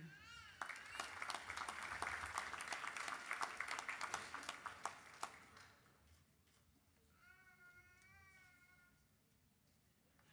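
Audience applauding for about five seconds, then dying away. Near the end a faint, high, wavering vocal sound rises briefly.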